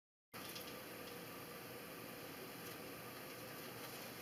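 After a third of a second of dead silence the sound cuts in as a steady room hiss with a faint steady hum, over which a tarot deck is quietly handled, cards giving a few faint soft taps as they are shuffled and laid on a cloth-covered table.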